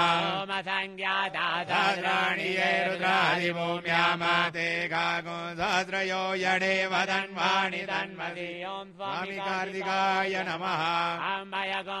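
Sanskrit mantras chanted in a continuous, melodic recitation over a steady held drone.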